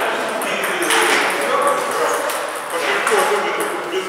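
People talking, with voices running on throughout.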